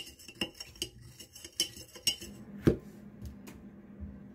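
Metal spoon stirring sugar into soy-sauce liquid in a glass measuring jug, rapidly clinking against the glass for about two seconds. A few separate knocks follow, the loudest near the three-quarter mark.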